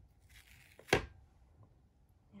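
Fingers rubbing and pressing a fabric appliqué onto vinyl in an embroidery hoop, a faint rustle, with one sharp tap just under a second in.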